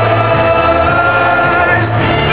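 Live amplified music led by violins, playing long held notes over a steady bass line.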